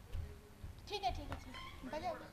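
Soft, short vocal sounds from a person, a few brief pitched utterances, while the tabla and harmonium are silent.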